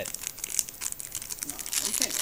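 Foil wrapper of a Pokémon trading card booster pack crinkling as it is pulled from the box and handled: a rapid run of crackles that grows louder near the end.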